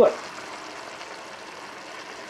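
Ground elk meat and tomato sauce simmering in a frying pan, with a steady sizzle.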